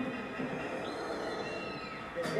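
Television audio of the show's title sequence: a high steady tone comes in about a second in, and a second high tone glides downward near the end.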